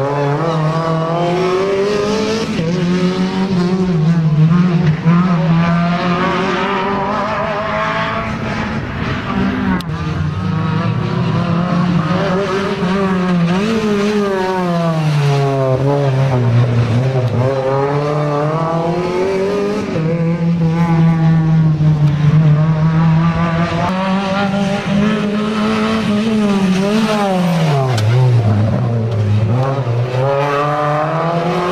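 Renault Clio race cars' four-cylinder engines, one car after another, revving hard and falling back over and over as they accelerate and brake between the cones of a slalom.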